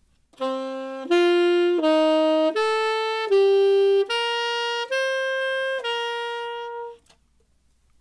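Saxophone playing eight separate held notes, one by one, leaping up and down. It spells out the scale degrees 1, 4, flat 3, 6, 5, flat 7, 2 and 1 of C Dorian in a shuffled order, as a drill to learn the mode.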